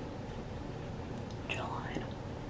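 Low, steady room noise with a brief soft, breathy whisper-like sound about a second and a half in.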